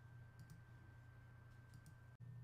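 Near silence: faint steady room hum with a few faint clicks, about half a second in and again near the end.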